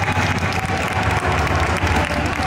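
Routine music playing over a hall's loudspeakers, with audience applause and clapping over it.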